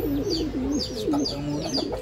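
Racing pigeons cooing in a breeding loft: overlapping, wavering low coos, with a run of short high chirps over them.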